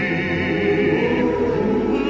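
Lush orchestral music with choir-like sustained voices and no sung words. A high held note with vibrato fades out about halfway through, over sustained lower chords.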